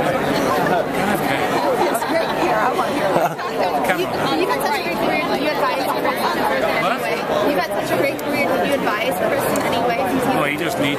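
Several people talking at once: overlapping crowd chatter, with no one voice standing clear.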